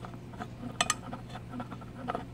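Light scattered clicks and ticks of small hardware being handled as an adjuster knob's threaded rod is screwed by hand into a light-mounting bracket, with a sharper double click a little under a second in. A steady low hum runs underneath.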